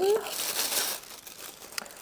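Paper and cardboard packaging crinkling and rustling as a lotion tube is drawn out of a small cardboard advent-calendar box, strongest in the first second and then fading to a few faint ticks.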